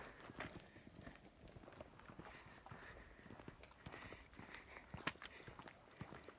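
Faint footsteps on a dirt and twig-strewn trail: small irregular crunches and taps, one a little louder about five seconds in.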